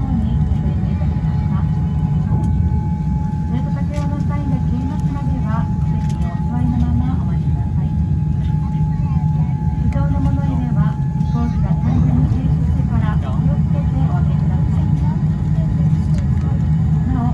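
Steady low rumble of cabin noise inside a Boeing 787-10 airliner taxiing after landing, with passengers talking in the background. A thin steady tone runs under it and stops about three-quarters of the way through.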